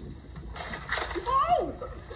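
A person's voice crying out, rising and falling in pitch, starting about half a second in over a rushing noise.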